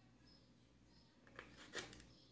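Near silence, then two faint short clicks in the last half second as the plastic body of a cordless drill and its slide-on battery pack are handled.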